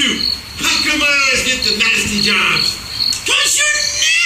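Men's voices in stage dialogue, with a short, high, cricket-like chirp repeating every half second or so behind them.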